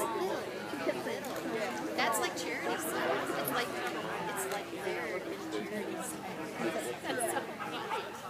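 Indistinct chatter of several people talking at once, with the echo of a large indoor hall.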